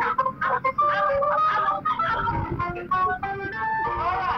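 Music playing: a melody of clear held notes that changes every fraction of a second, for the children to dance to.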